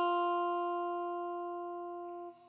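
A single plucked acoustic guitar note left ringing, slowly fading away.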